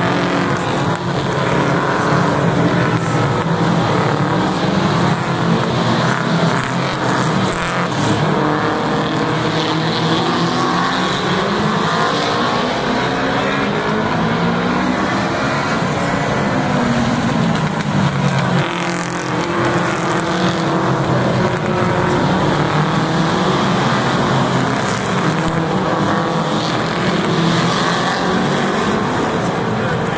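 A pack of American cup stock cars racing on a short oval, several engines running hard together, the engine note rising and falling as cars pass and back off.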